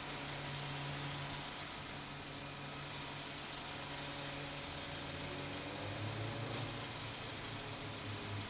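Honda XL125V Varadero's small 125 cc V-twin engine running at a low idle, muffled, over a steady hiss; its low hum drops slightly in pitch about six seconds in.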